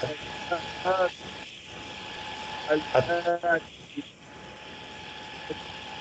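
Two short, quiet snatches of a person speaking over a call line, about a second in and again around three seconds in, with a steady hiss underneath.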